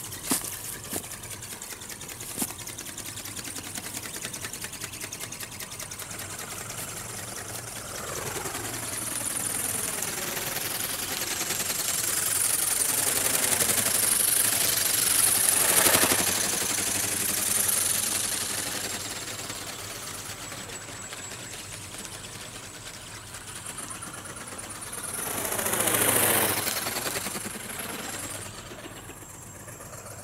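A radio-controlled flapping-wing ornithopter's Turnigy 2211 brushless motor and reduction gearbox buzzing as it drives the wings. The buzz swells loud as the model passes close by about halfway through, and again near the end.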